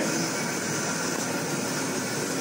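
Steady, even rushing noise with no clear pitch and no rhythm, like a running fan or air system.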